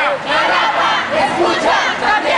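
A crowd of protesters shouting a chant together, many voices overlapping loudly and continuously.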